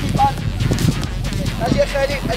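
Several children's high voices chattering and calling out over a steady low rumble.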